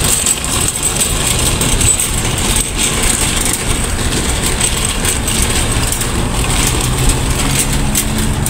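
A metal wire shopping cart rolling over asphalt, its wheels and frame giving a steady rumbling rattle with many small clinks.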